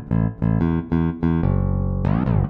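Solo electric bass guitar playing a syncopated eighth- and sixteenth-note line, then landing on one held note about three quarters of the way in.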